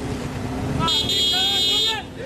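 Street traffic rumbling under a crowd's voices, with a steady high-pitched tone held for about a second from about a second in.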